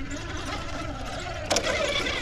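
Electric motor and drivetrain of a Redcat Ascent RC rock crawler whining as it crawls over rock, under steady wind noise on the microphone. About one and a half seconds in, a louder rush of noise sets in.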